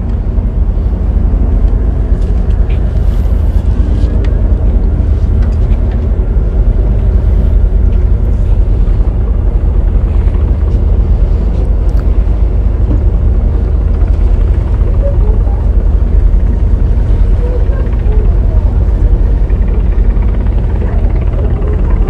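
Steady deep rumble of wind buffeting the microphone on the deck of a moving cruise ship, with the low hum of the ship's engine under it.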